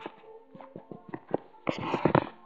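Background music playing faintly, with a few short clicks and a louder rustle near the end from the handheld camera being moved.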